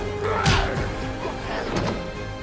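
Orchestral film score with fight sound effects over it: a sharp crash about half a second in, and smaller hits near the start and near the end.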